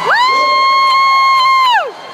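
An air horn blasting one long, steady note, its pitch sliding up as it starts and dropping away as it cuts off near the end.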